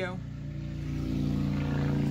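Motorcycle engine going by, a steady running note that grows gradually louder.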